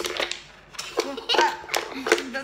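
Klask game ball and magnetic strikers knocking against each other and the wooden edges of the board in a quick run of sharp clicks, with a short burst of laughter about halfway through.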